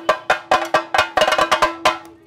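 Chenda drum beaten with sticks in a fast run of sharp strokes, about seven a second, with a steady ring beneath them.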